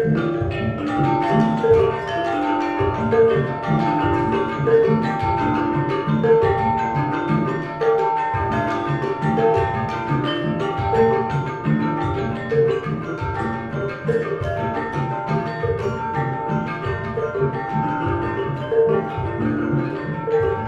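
Gamelan ensemble playing live: bronze metallophones struck with mallets in a steady, dense interlocking pattern of ringing notes, with a repeating higher line over regular lower strokes.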